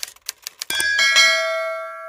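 Subscribe-button end-screen sound effects: a few quick clicks in the first half second, then a bright bell chime struck twice in quick succession and left ringing as it slowly fades.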